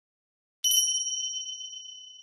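Silence, then a little over half a second in a single high, bell-like electronic ding strikes and rings out, fading slowly: a logo chime.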